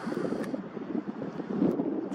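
Wind buffeting the microphone: an uneven low rush of noise with no calls or tones, with a brief higher hiss in the first half second.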